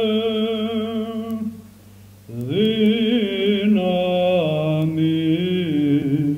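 A man's voice chanting Byzantine chant in the second mode (ēchos B′). A long held note fades out about a second and a half in, and after a short pause the voice comes back with an ornamented melodic phrase that steps through several pitches.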